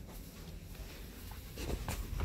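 Faint scratchy rustling and scuffing of movement on a leather couch, a little louder near the end.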